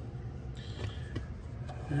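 Steady low background hum, with a few faint clicks and a brief light rustle in the first half.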